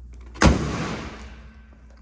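Toyota Hilux bonnet dropped shut, a single loud slam about half a second in as it falls into its latch, with a short ringing, echoing tail.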